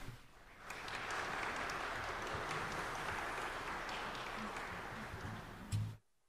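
Congregation applauding, starting about a second in and cutting off suddenly near the end, just after a low thump.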